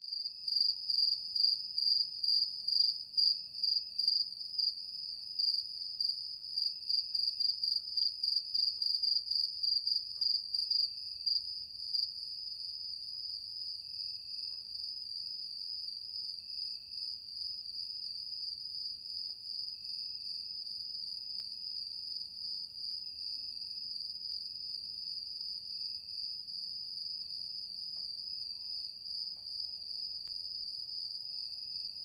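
A high, steady insect trill like a cricket's, pulsing quickly and evenly for the first dozen seconds, then running on as an even drone.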